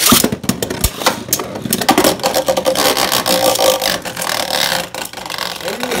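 Two Beyblade Burst tops ripped from ripcord launchers at once, then spinning and colliding in a clear plastic Beystadium. A dense whirring scrape is broken by many sharp clicks of impacts, and it eases off in the last second or so.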